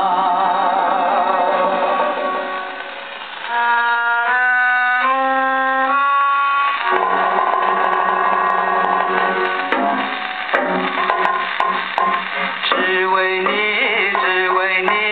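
A 1959 78 rpm record of an Indian-style Chinese popular song playing on a cabinet gramophone, with a narrow, old-record tone. Harmonium holds steady notes that step upward a few seconds in, and drum strokes come in the second half.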